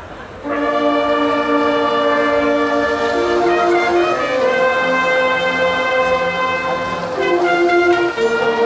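Brass marching band coming in about half a second in with loud, sustained brass chords, the held notes shifting to new chords a few times.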